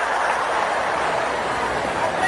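Steady noise from a video clip's soundtrack played over a hall's loudspeakers.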